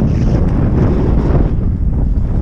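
Heavy wind buffeting the microphone of a camera on a downhill mountain bike in motion, a loud steady low rumble with faint knocks from the bike on the trail.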